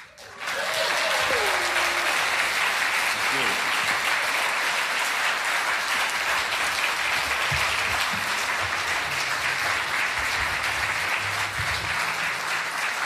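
Audience applause at a live concert, starting suddenly as the song ends and holding steady, with a few voices calling out from the crowd near the start.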